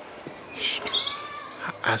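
A bird singing: a short phrase of high chirps and whistles about half a second in, lasting under a second.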